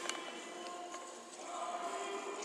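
A choir singing long held chords, moving to a new chord about one and a half seconds in, with a short sharp click just after the start.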